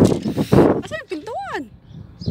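Rough wind noise buffeting the phone's microphone, then about a second in a short wordless voice sound that swoops up in pitch and falls back down.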